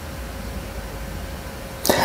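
Steady low background rumble with a faint steady hum, the room noise picked up by the microphone during a pause in speech; a man's voice comes in right at the end.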